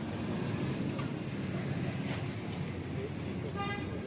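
Steady roadside traffic rumble, with a short horn toot from a passing vehicle near the end.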